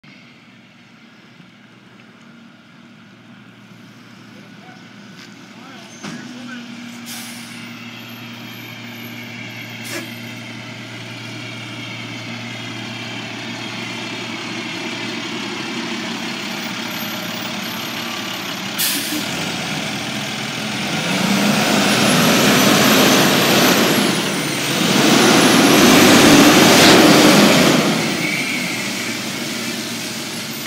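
Rear-loader garbage truck's diesel engine running, a steady low hum that grows louder as the truck draws near. In the last ten seconds come two loud rushing bursts of noise, a few seconds each, as it goes by.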